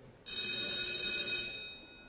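A bell rings with a high, metallic ring for just over a second, then stops and dies away.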